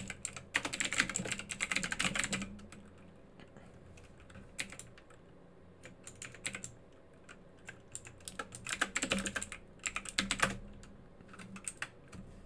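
Computer keyboard typing in quick runs of keystrokes: a fast run over the first two seconds or so, a few scattered keys in the middle, and another run about nine to ten seconds in.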